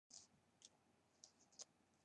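Near silence broken by four or five very faint, brief high-pitched ticks and swishes from a damp, curly human-hair wig being detangled.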